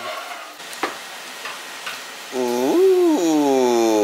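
Young baby vocalizing: one long drawn-out coo that starts past the middle, rises and falls, then slides slowly down in pitch. A faint click comes just under a second in.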